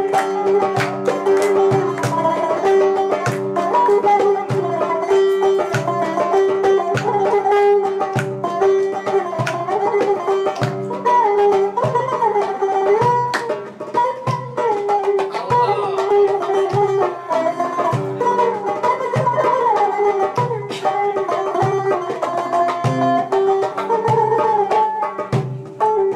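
Bizuq (bouzouki-type long-necked lute) playing an instrumental melody over a steady drone note, with a regular low drum beat underneath.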